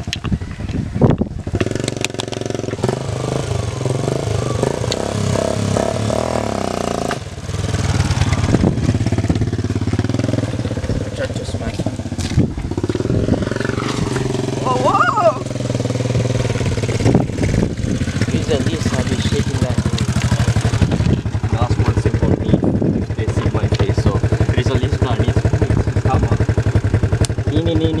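Small motorcycle engine running as the bike is ridden, with voices over it.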